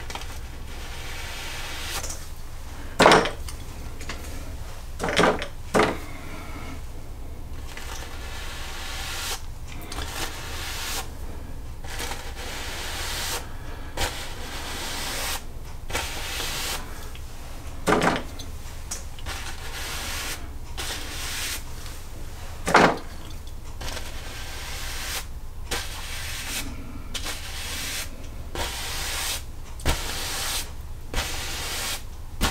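Bristle brush dragged down over an oil-painted canvas in repeated vertical strokes, a scratchy rubbing about once a second, with a few louder knocks along the way.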